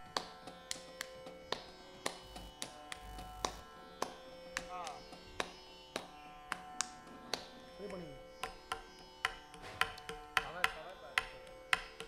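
Soft, sparse percussion strokes from a Roland electronic percussion pad struck with drumsticks, about two a second and quickening in the second half. A faint steady drone sits beneath them.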